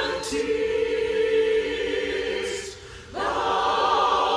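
A large virtual choir singing a held chord, breaking off briefly just before three seconds in and then coming back in.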